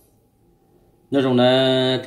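A man's voice: faint room noise, then about a second in he starts speaking loudly on a long, held vowel at one steady pitch.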